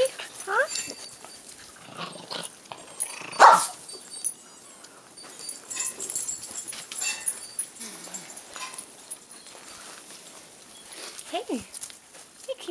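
Young puppies whimpering and yipping at close range, with one louder sharp yelp about three and a half seconds in. Scattered rustles and bumps of handling run between the cries.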